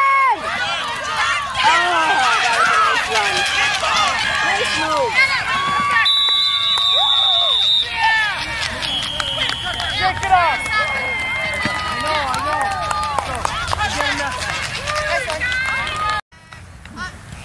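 Spectators and sideline voices at a youth football game shouting and cheering together through a running play. A long, shrill referee's whistle sounds about six seconds in, and a shorter high note follows a few seconds later.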